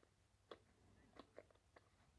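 Near silence broken by four or five faint clicks and taps as the impact wrench's metal hammer-mechanism housing is handled and fitted against the motor and plastic shell.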